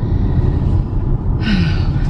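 Steady low road and tyre rumble inside the cabin of a moving Tesla, with no engine note. A short breathy sigh comes about one and a half seconds in.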